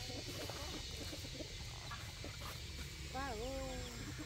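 Faint outdoor background with a steady low rumble and scattered faint calls. Near the end comes one drawn-out call that dips, rises and then slowly falls in pitch.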